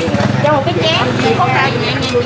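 People talking over one another, with a steady low hum underneath.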